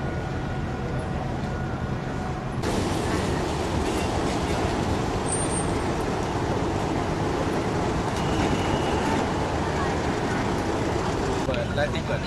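Steady outdoor background noise, a broad rumble and hiss with no distinct event, becoming louder and brighter about two and a half seconds in.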